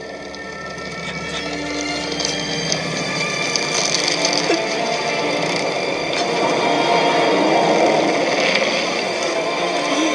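Film soundtrack of music and sound effects, a dense haze with a few held tones, swelling steadily louder throughout.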